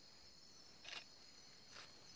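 Near silence with a faint, steady high-pitched chorus of night insects such as crickets, and two faint brief clicks, one about halfway through and one near the end.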